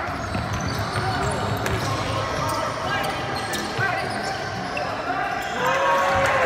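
Indoor basketball game: a basketball bouncing on a hardwood court, short sneaker squeaks, and spectators' and players' voices in an echoing gym.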